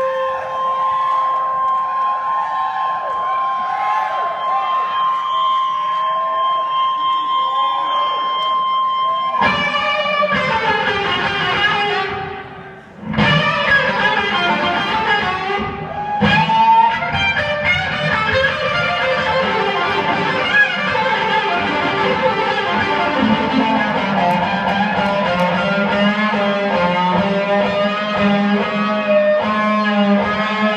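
Live rock band led by electric guitar, heard from the audience in a theatre. One long held guitar note sings over the band for about the first nine seconds. The music briefly thins out about twelve seconds in, then the full band comes back in.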